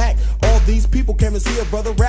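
Early-1990s hip-hop track: a heavy bass and drum beat with pitched sounds that bend up and down.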